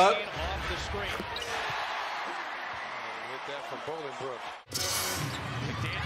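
Televised NBA arena sound: crowd noise with a basketball bouncing on the hardwood court. About four and a half seconds in, the sound cuts out for an instant and comes back with louder crowd noise.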